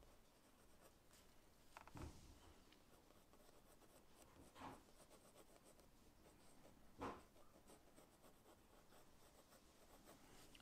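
Faint scratching of a mechanical pencil's lead drawing on sketchbook paper, with three soft bumps about two, four and a half, and seven seconds in.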